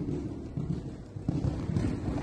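Uneven low rumble of wind buffeting the camera microphone.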